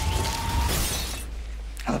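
Movie trailer sound design: a crash of shattering over a steady low rumble, with a faint tone rising slightly and fading out in the first second.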